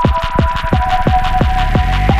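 Slowed and reverbed electronic track building up: a roll of deep kick-drum hits, each dropping in pitch, speeding up over a held high synth tone.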